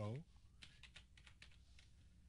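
Computer keyboard being typed on: a quick run of faint keystrokes.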